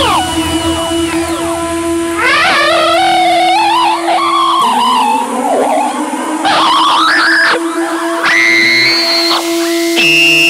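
Distorted electric guitar (Ibanez PGM) playing a lead over a steady low held note from a dubstep backing track. It plays three phrases of swooping pitch glides that dive and climb sharply, with wavering bends, coming in a couple of seconds in, again at about the middle, and near the end.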